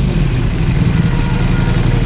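Ducati Multistrada V4 S's V4 engine idling steadily, warmed up to about 91 °C, through its original Akrapovic full exhaust system.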